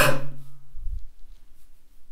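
A man's forceful breath out, loud at the start and fading within about a second, emptying the lungs for a yoga breath-hold (bandha) exercise. A soft low thud comes about a second in.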